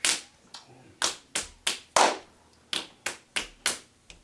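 Fists slapping into open palms, counting out rock-paper-scissors: about ten sharp smacks in uneven runs.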